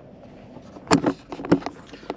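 Inside a slow-moving SUV's cabin: a low, steady hum, then a few sharp knocks and clicks about a second in.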